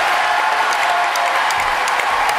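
Studio audience applauding, a steady ovation of many people clapping.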